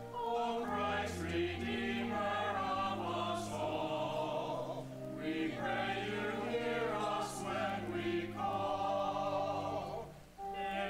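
Church choir singing with vibrato over steady held low notes, in phrases with a brief break about five seconds in.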